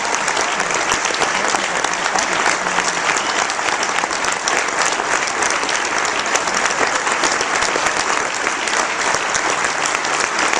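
A large audience applauding steadily, a dense sustained patter of many hands clapping at once.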